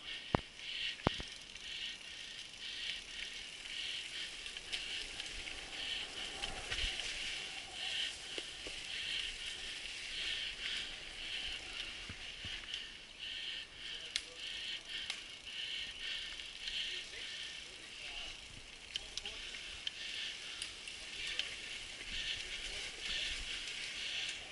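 Mountain bike riding over a dirt singletrack trail: tyre, chain and frame noise with a high hiss that pulses about twice a second, and a few sharp knocks and rattles over bumps.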